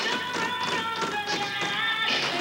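Tap shoes striking the stage in quick, uneven clicks, over recorded music playing a melody.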